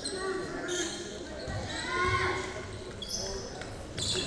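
Basketball gym ambience during a stoppage: distant voices calling out across the hall in the middle, with short high squeaks of basketball shoes on the hardwood court at the start and just after three seconds.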